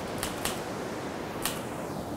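Typewriter keys struck at an irregular pace, about four sharp clicks, over a steady rushing background.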